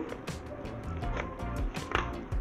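Bubble-wrap packaging crinkling and crackling in gloved hands, in irregular bursts with a sharper crackle near the end, over soft background music.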